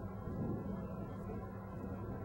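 Steady low rumble with an even hum, typical of the eight-wheeled armoured vehicle's diesel engine idling.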